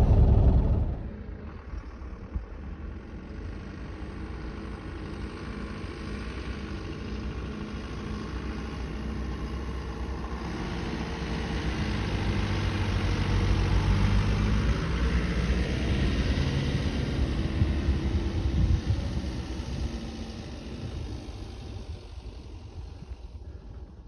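Mercedes Vario 818 truck's diesel engine running as it drives across desert sand. For about the first second it is loud from inside the cab. It is then heard from outside, growing louder as the truck approaches and passes, then fading as it drives away.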